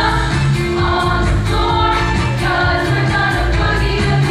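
All-female show choir singing in harmony over an accompaniment with a steady beat.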